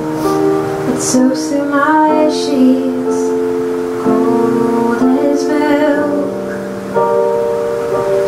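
A woman singing the verse of a folk song in long held notes, with the hiss of sung consonants now and then, accompanied by an electric keyboard and an upright bass.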